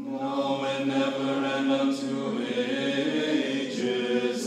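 Seminary choir singing Orthodox liturgical chant a cappella in several sustained parts, entering together at the start after a brief silence.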